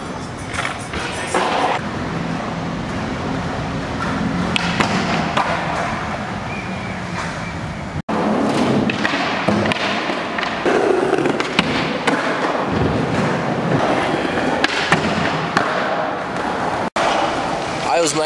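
Skateboards rolling on a concrete skatepark floor, with scattered sharp clacks and knocks from boards hitting the ground, amid voices.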